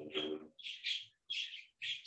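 Three short, faint high chirps from a small bird about half a second apart, heard behind the fading end of a man's soft spoken word.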